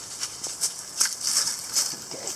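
Dry leaf litter and wood-chip mulch rustling as weeds are pulled up by hand and dropped into a bucket: a run of short scratchy rustles, about two or three a second.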